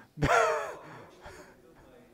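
A person's voice: one short, loud, breathy vocal sound about a quarter second in, followed by fainter bits of voice.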